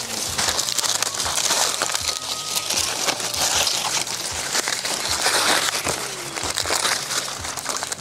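Dry maize husks and leaves rustling and crackling as cobs are handled and stripped, a steady crinkling with many small snaps.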